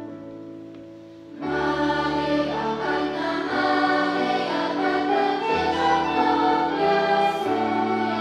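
Children's choir with flutes and electronic keyboard performing a Christmas carol. A held keyboard chord fades away, then the whole ensemble comes in loudly about a second and a half in and plays on with sustained notes.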